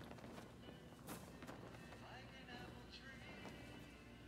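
Near silence: faint background music with soft swishes of large silk wing flags being swept through the air.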